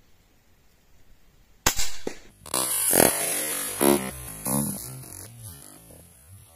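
A single shot from a Hatsan Vectis .22 (5.5 mm) PCP air rifle, a sharp crack about a second and a half in, followed by keyboard-like background music.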